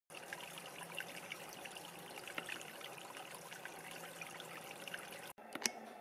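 Small stone-lined garden stream trickling over stones, a faint steady water sound dotted with tiny splashes. It cuts off abruptly about five seconds in, and a couple of faint clicks follow.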